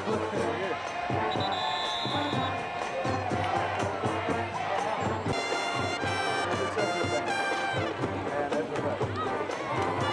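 A school band playing brass music with a drum beat, with crowd noise under it. Loud held brass chords sound a little past the middle.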